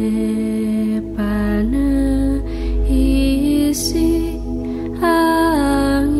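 Film score music: a slow melody of long held notes that slide between pitches, over a low steady drone.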